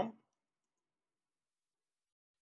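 The tail of a spoken word in the first moment, then silence.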